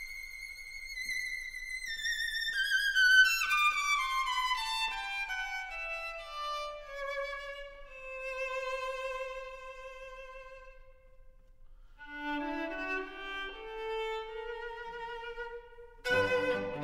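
Violin playing alone with vibrato: a long line stepping down from the high register to a low note held for a couple of seconds, fading briefly, then a phrase climbing again near the end.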